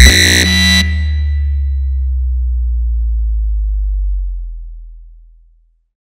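Ending of an uptempo reverse-bass hardcore track. The kick drum stops, a high synth layer cuts off under a second in, and a long low bass note holds, then fades out over the last couple of seconds.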